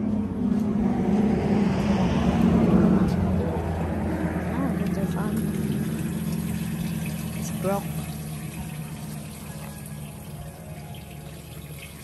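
A motor vehicle going past: a steady engine hum and road noise that swell over the first three seconds and then slowly fade away.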